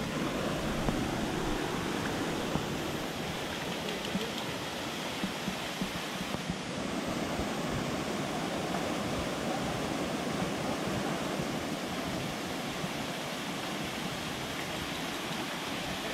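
Small waterfall cascading over rocks into a pool: a steady rush of falling water.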